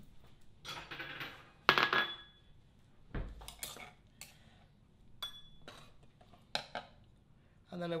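A kitchen knife and a small ceramic bowl knocking and clinking on a cutting board and counter. There are several separate knocks and clinks. The loudest comes about two seconds in with a brief ring, a dull thump follows around three seconds in, and another short ping comes near the middle.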